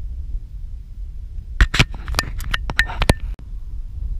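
Wind rumbling on the microphone, then a quick run of about eight sharp clicks and knocks in under two seconds: handling noise as the camera is moved.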